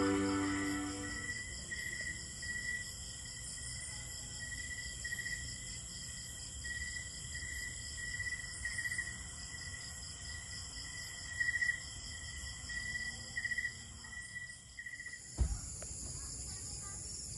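Night chorus of crickets and other insects: a steady high-pitched drone with irregular bursts of chirping over it, after background music fades out in the first second or so. A brief knock near the end.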